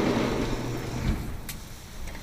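Low background rumble of an arcade, fading slightly, with a faint click about one and a half seconds in.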